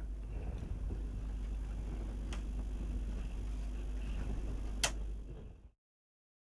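Steady low background hum with two faint clicks, about two and a half seconds apart, before it fades to silence near the end.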